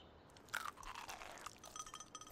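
A person biting and chewing crunchy salad: a sudden crunch about half a second in that fades over the next second. Near the end come a few short, high, ringing notes that repeat.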